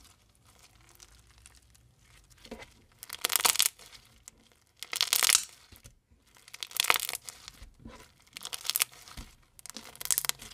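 Blue crunchy slime full of foam beads being squeezed and pressed by hand, giving bursts of crackling and popping. The first couple of seconds are quiet, then come about four strong squeezes, each a short crackly burst, one every one and a half to two seconds.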